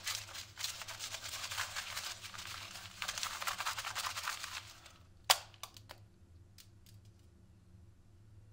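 Sheets of notebook paper being crumpled in the hands, a dense crackling that runs for about five seconds. A single sharp snap follows about five seconds in, then a few small ticks.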